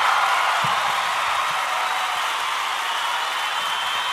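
A steady, loud rushing noise with no tune or rhythm, brightest in the middle range, with a faint thin tone coming in past the middle.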